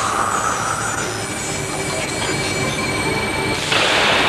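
A train running on the rails: a steady, loud rushing rattle, with a high screech of steel wheels on rail in the first second. The noise surges louder near the end.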